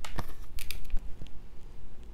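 Several short clicks and rustles in the first second as a large oracle card is handled and turned in the fingers, over a steady low hum.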